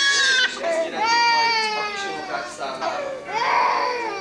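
A toddler crying loudly in long, high-pitched wails, three in a row.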